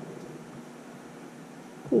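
Quiet steady background noise with nothing distinct in it, and a voice starting to say "hey" at the very end.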